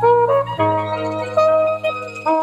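Live jazz band: a melody of held notes on a wind instrument over a steady bass line, with no strong drum hits.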